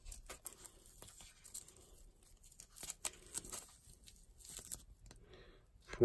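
Faint rustling and scattered small clicks of hands handling and picking up pieces of foam packing.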